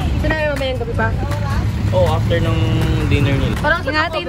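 People talking over the steady low rumble of a bus engine idling.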